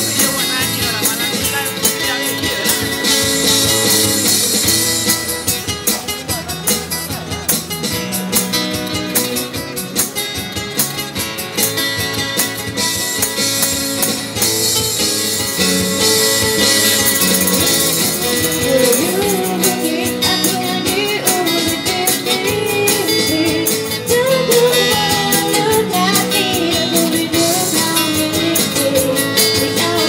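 Live street busking of a pop song through a small amplifier: two acoustic guitars strumming with a steady tambourine rhythm, and a girl's amplified singing coming in a little past the middle.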